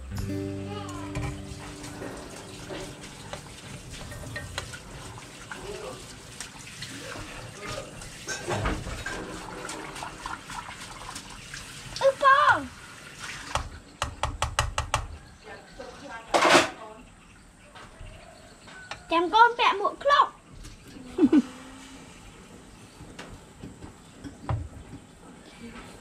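Beaten egg frying in a pan with a steady sizzle, a metal spoon scraping and tapping against the pan in a run of clicks through the middle, and short bursts of voices.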